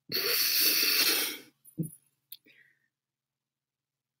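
A woman's long, breathy exhale lasting about a second and a half, followed by a brief short vocal sound.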